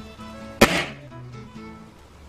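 A single shot from a .22 air rifle, sharp and short with a brief fading tail, about half a second in, over background music.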